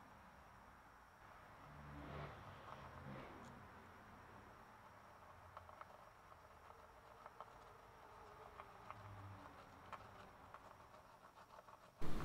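Near silence, with a faint low rumble about two seconds in and a few faint light clicks from a small screwdriver setting the saddle screws of a gold Tele-style bridge.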